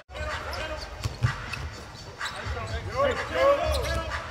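A basketball being dribbled on a hardwood court, a few separate bounces, with players' voices calling out on the court.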